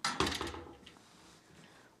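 Metal-framed ironing board set down upside down on a table: a short clatter of knocks with a low thud in the first half second.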